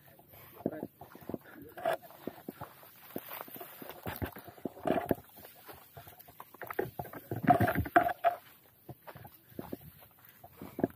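Leaves and fern fronds brushing and rustling, with footsteps, as people push through dense scrub on foot, in irregular bursts that are loudest about seven to eight seconds in.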